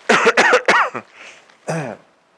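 A man coughing into his hand: a quick run of several coughs in the first second, then one more cough shortly before the end.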